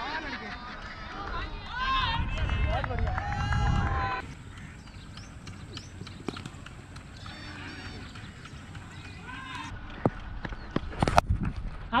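Players' voices calling across a cricket field over wind rumble on a helmet-mounted camera's microphone, then a quieter stretch with a steady high whine. Near the end comes a sharp crack, a cricket bat striking the ball.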